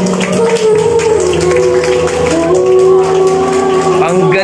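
A young girl singing a love song into a microphone over a backing track, holding long sustained notes.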